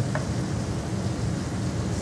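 Sliced garlic and anchovies sizzling gently in olive oil and chicken fat in a skillet as a wooden spoon stirs and scrapes the pan. The garlic is being softened over moderate heat, not browned. Underneath is a steady low rumble.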